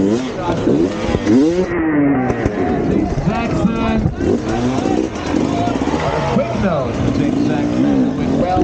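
Enduro dirt bike engine revving up and down again and again as the throttle is worked over obstacles.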